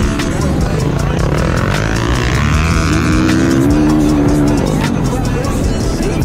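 Flat track racing motorcycle's engine heard from onboard, its revs rising and falling through the corners, climbing about three seconds in, over heavy wind and track noise on the camera.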